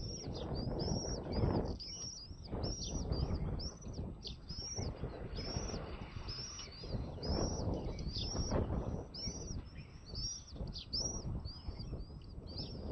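Birds chirping: short high chirps repeated a few times a second, over a louder low rumbling noise that swells and fades.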